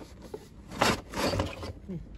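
Cardboard box and plastic wrapping rustling and scraping as a mirrored gold serving tray is slid out of its packaging, with a sharp burst of noise a little under a second in.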